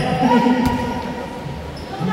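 Basketball bouncing on a hardwood court, with one sharp bounce about two-thirds of a second in, under a man's voice.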